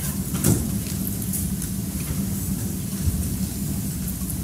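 Steady low hum and background room noise with no voice, with a faint click about half a second in.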